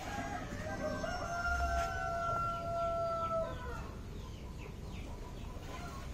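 A rooster crowing once: one long call that holds a steady pitch for about three seconds and then trails off.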